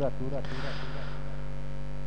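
Steady low electrical mains hum in the recording: a buzz of several even, unchanging tones, with a faint hiss over it.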